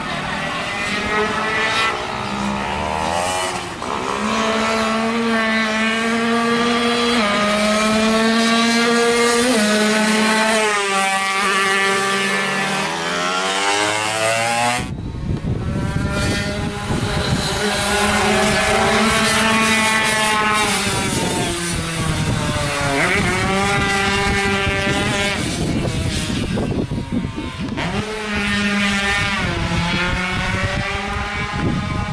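Two-stroke Yamaha F1ZR race motorcycle at full throttle on track, its engine note climbing through the revs and dropping back at each gear change, over and over. The sound changes abruptly about halfway through, where the recording cuts to another pass.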